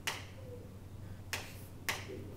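Chalk writing on a blackboard, giving three sharp taps: one at the start and two close together in the second half, over a faint steady low hum.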